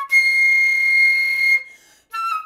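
Concert flute holding one long, high note for about a second and a half, then breaking off into a short rest.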